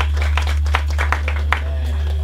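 Audience clapping, irregular hand claps, over a loud, steady low note left ringing from the band's amplified instruments as a song finishes.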